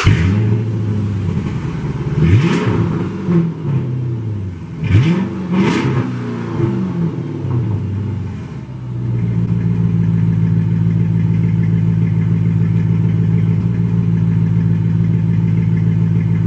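A car engine, just started, is revved twice with the pitch rising and falling each time. It then settles into a steady idle about nine seconds in.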